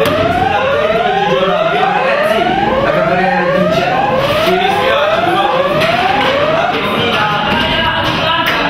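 Evacuation alarm sounding a whoop tone that rises again and again, about one and a half sweeps a second, the signal to leave the building in a fire drill. It stops shortly before the end, with background music running underneath.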